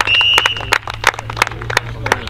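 Rugby referee's whistle blown once as the try is awarded, a single steady note lasting under a second, followed by scattered handclaps.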